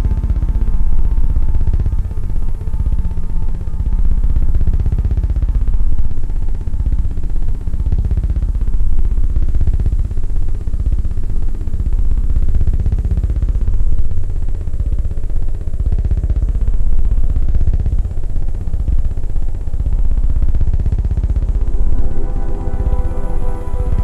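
Live-coded electronic music from TidalCycles: a loud, heavy bass drone with sweeping tones that rise and fall every couple of seconds.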